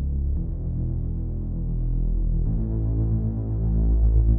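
Synth patch in Native Instruments Massive, built from saw oscillators, holding low sustained notes. It is low-pass filtered so it sounds muffled, has reverb, and an LFO on its volume gives it a wavy, throbbing pulse. The note changes about half a second in and again about two and a half seconds in, growing louder toward the end.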